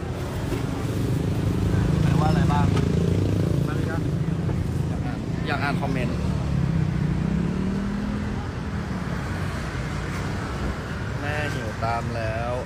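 Street traffic: a vehicle engine running close by, loudest about two to three seconds in and rising in pitch around seven to eight seconds in as it accelerates, with scattered voices over it.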